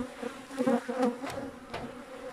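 Honeybees buzzing as they fly close around the hives, the buzz swelling and fading as single bees pass near.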